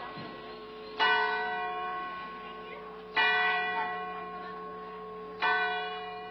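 A church bell struck slowly, three strikes about two seconds apart. Each strike rings on and fades away before the next.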